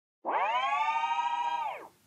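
A short musical sting: one held, synthesized-sounding tone rich in overtones, bending up as it starts and sliding down as it fades, about a second and a half long. It marks the transition from an inserted clip back to the studio.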